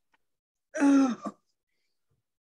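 A person's short wordless vocal sound, falling in pitch, about a second in, followed by a brief second catch.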